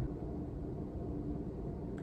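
Steady low background hum with a faint constant tone; no distinct event stands out.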